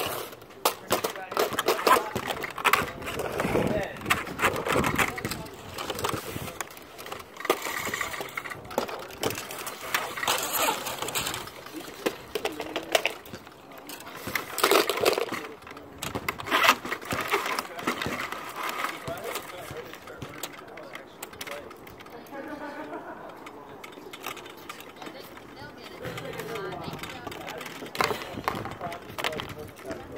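Voices talking in the background, with many short clicks, knocks and rattles of hands working wire and tools on a wiring board.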